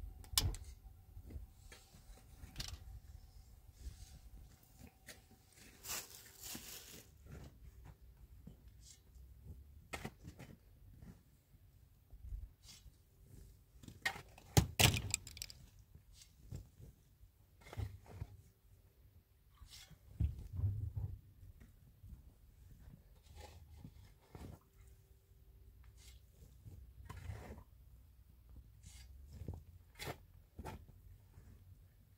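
Irregular knocks, clinks and short scrapes of handwork. First a cooking pot is handled on a gas stove; later a long-handled shovel scrapes and tosses dry soil, with a few dull thuds.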